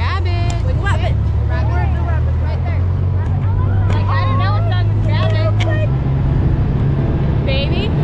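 Side-by-side UTV engine running with a steady low drone that steps up in pitch about six seconds in, under girls' voices calling out and laughing as they ride.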